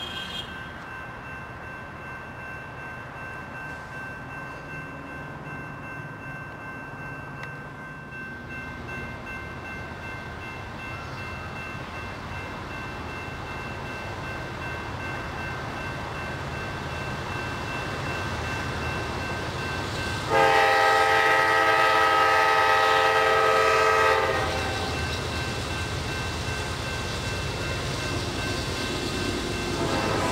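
Diesel freight locomotives rumbling as they approach, the rumble slowly building. About twenty seconds in, the lead Norfolk Southern GE D9-40CW sounds one loud horn blast about four seconds long, a chord of several notes, and the heavier rumble of the train goes on after it.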